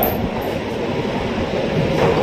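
Steady low rumbling background noise with no speech, the constant hum of the room.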